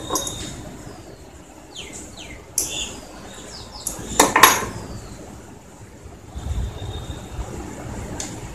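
Small metal clinks and clicks as a metal toe ring is worked onto and tightened around a man's toe, with one sharp click about four seconds in.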